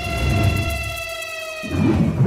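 A long held musical note that slides slowly down in pitch and fades out near the end, over a low rumble that drops away briefly and then comes back.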